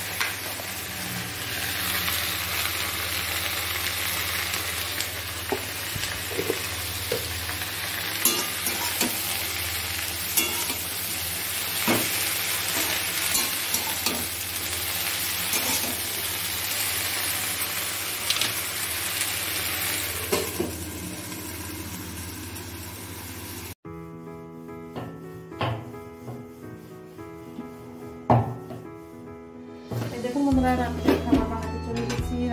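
Leafy greens sizzling in a hot steel kadai as a steel spatula stirs and scrapes them, with sharp metal clinks now and then against the steady frying hiss. About three-quarters through, the frying gives way abruptly to soft music with a few light clinks.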